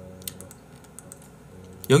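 A few scattered, sharp computer-keyboard clicks in the first second, over a faint background.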